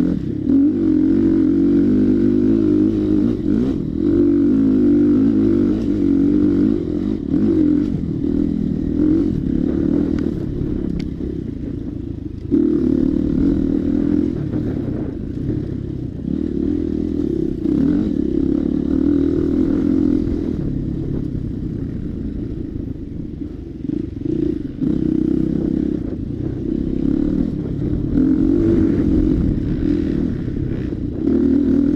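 KTM dirt bike engine heard up close from on board, revving up and down continuously with the throttle while riding a twisty wooded trail. It eases off briefly now and then and picks back up sharply.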